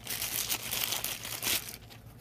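Plastic wrapping crinkling as it is handled and pulled open by hand, a dense crackle that stops about one and a half seconds in.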